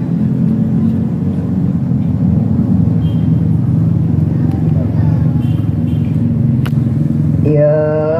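A pause in a boy's melodic Quran recitation over a loudspeaker, filled by a low, steady hum. Near the end his voice comes back in on a long, wavering sung note.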